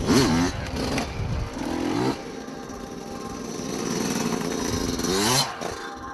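Motorbike engine revving up and down in several surges, pitch climbing and dropping, loudest near the start and just before the end.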